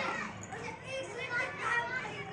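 Faint, indistinct chatter of children's voices in the background.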